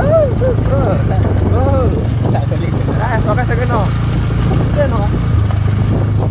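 Steady low rumble of a motorcycle riding along, with a man's voice calling out over it in drawn-out rising-and-falling sounds.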